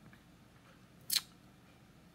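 Quiet room tone, broken by one short hissy rasp about a second in.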